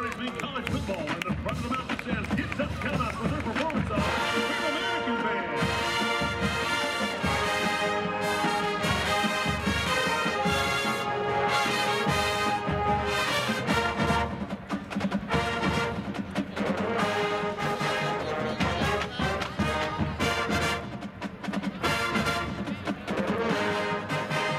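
Large college marching band playing on a football field. Drums play alone at first, then about four seconds in the brass section comes in with long held chords over the percussion.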